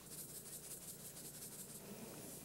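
Salt shaker being shaken over raw chicken pieces: a faint, rapid run of soft rattling shakes.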